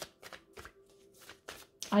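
A deck of tarot cards being shuffled by hand: a quick, irregular run of soft card flicks and slaps.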